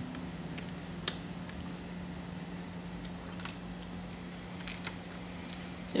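Hot-air rework gun blowing, heard as a steady low hum under a faint hiss. One sharp tick comes about a second in and a few fainter ticks follow later, as a scalpel chips at the cracked glass back of an iPhone 11 Pro Max.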